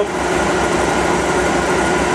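Steady running of a machine, a rapid low pulsing under an even hiss with a few faint constant tones: the motor-driven, modified three-phase car alternator of a nine-coil transformer test rig, running with no load applied.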